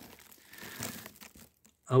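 Faint crinkling rustle lasting about a second, starting about half a second in.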